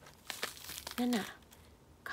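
Maitake (hen-of-the-woods) mushroom fronds crackling and tearing as a knife cuts into the cluster and gloved fingers pull pieces apart, a quick run of crisp crackles in the first second.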